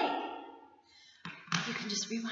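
A woman's voice, with a rising exclamation that fades away, then a short click and more voice near the end.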